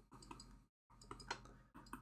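Faint, scattered clicks and taps of a stylus on a tablet screen during handwriting, over near-silent room tone.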